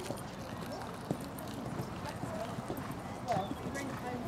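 A horse cantering on a sand arena surface, its hoofbeats sounding as repeated short thuds, with indistinct voices in the background.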